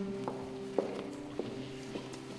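Hard-soled footsteps clicking on a stone church floor, a few slow steps about half a second apart, over quiet background music with held notes.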